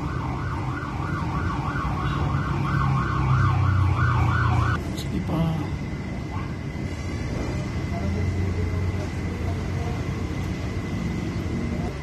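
An electronic siren warbling about three times a second, which cuts off abruptly just under five seconds in, over a steady low engine hum.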